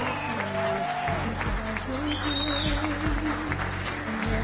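Audience applause, a crowd of hands clapping, over steady background music with a held bass line.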